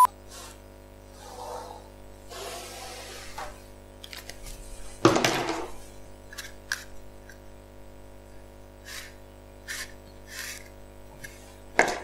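A pen scratching and rubbing on a plastic sheet as an outline is traced around a hexagonal game tile, with a louder brief noise about five seconds in and a few faint ticks after it.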